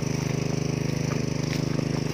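Ogawa engine-driven water pump running steadily with a rapid, even beat, pumping water out to the sprinklers.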